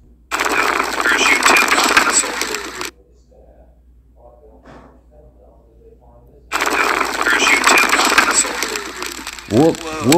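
Loud rushing wind and road noise from a moving scooter ride recording, cutting in and out abruptly twice.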